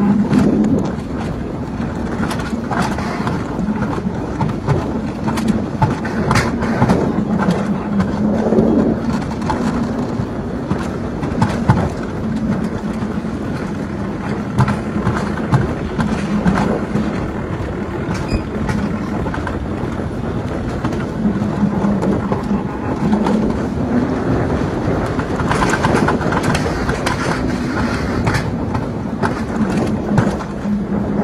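Mountain coaster sled rolling fast down its steel rail track: a steady rolling drone from the wheels, with rattling clicks and knocks all the way through.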